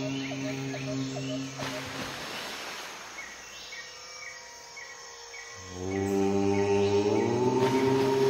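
Chanted "Om" held on one steady pitch, fading out about a second and a half in. In the gap, a soft hiss with a row of short high chirps; a new Om begins about six seconds in, its pitch sliding slightly upward about a second later.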